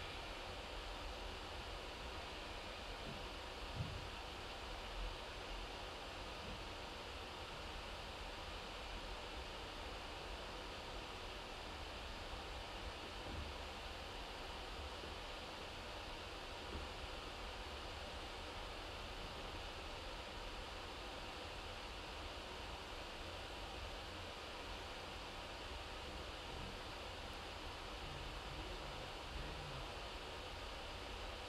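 Steady faint hiss of room tone with no voice, broken by a couple of soft low knocks about four and five seconds in.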